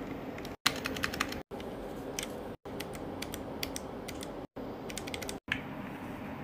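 Plastic keycaps and switches of a mechanical keyboard clacking in short, irregular clusters of keystrokes. The clusters are broken by several brief dead-silent gaps.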